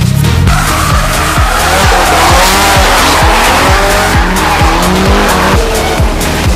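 Tyres squealing as a car slides through a drift, cutting off suddenly near the end, over electronic dance music with a steady kick-drum beat.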